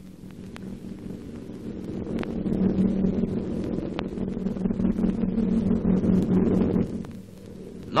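Steady drone of piston aircraft engines, swelling over the first few seconds, holding loud, then dropping away near the end.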